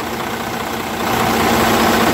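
Semi truck's diesel engine idling steadily, heard close up in the open engine bay.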